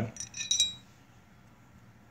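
A few light metallic clinks with a brief ring as the barrel of a disassembled Beretta 9000S pistol is handled and lifted out of the slide, all within the first second.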